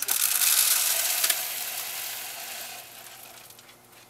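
Crumbly potting medium poured from a plastic cup into the top of a white PVC-pipe strawberry tower, hissing as it runs down inside the pipe. It is loudest for the first second or so, then tapers off over about two seconds as the flow dies away.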